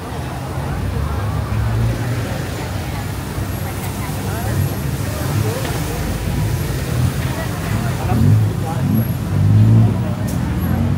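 Busy street ambience: many people talking around the walker while motor traffic runs along the street, with a low rumble that swells louder near the end.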